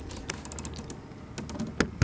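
A few irregular sharp clicks and taps from the camera being handled as it is swung round.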